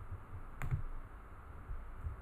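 A single computer mouse click about two thirds of a second in, over faint low room noise.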